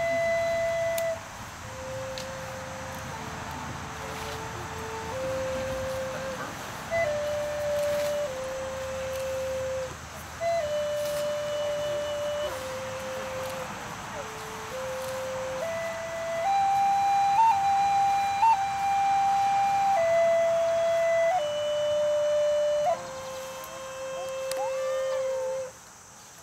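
A flute plays a slow melody of long held notes, each about a second or two, stepping between a handful of pitches with a few quick grace-note flicks.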